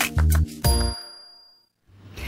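The end of a TV morning show's opening jingle: upbeat music with a beat that closes on a final chord about half a second in. The chord rings out and fades away to silence.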